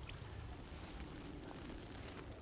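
Faint, steady outdoor background ambience: an even low hiss and rumble with no distinct event.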